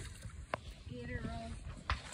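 A hooked fish splashing and thrashing at the water's surface while being reeled in, with a couple of sharp clicks and a brief faint voice in the middle.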